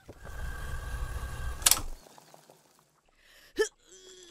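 Glass marble shot in a game of marbles: a single sharp click a little before halfway, over a low steady rumble of background ambience. It is followed by a pause and one brief short sound near the end.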